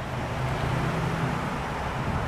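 Steady road traffic noise, with a low vehicle engine hum for about the first second and a half.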